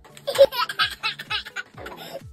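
A toddler laughing heartily in a quick run of short, high-pitched bursts.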